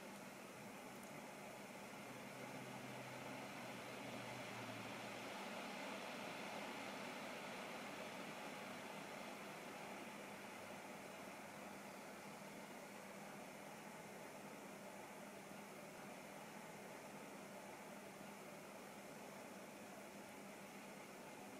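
Faint steady background hiss with a low, steady hum; no distinct event.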